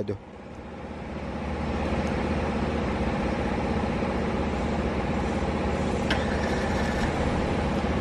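Hyundai Azera engine started by the key fob's remote start. Its sound builds over about the first two seconds, then settles into a steady idle.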